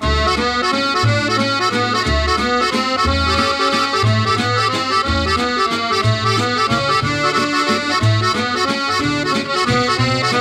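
Accordion playing a lively instrumental tune, with a bass line that moves note by note beneath the melody.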